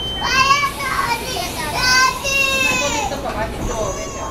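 A steady door-warning buzzer on a Taiwan Railway EMU800 commuter train cuts off just after the start as the doors slide shut. Over it a child's high voice calls out loudly several times, rising and falling in pitch.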